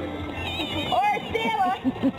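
Children's high-pitched squeals and voices, wavering in pitch, over background music.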